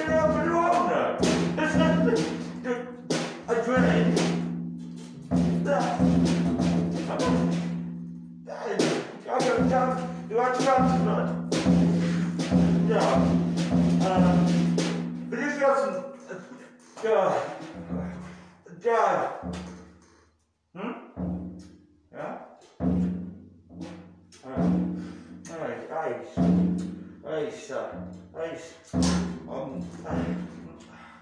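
Improvised noise music: wordless, voice-like sounds gliding up and down in pitch over a steady low drone, with knocks and thuds. After about sixteen seconds it breaks up into short, choppy bursts.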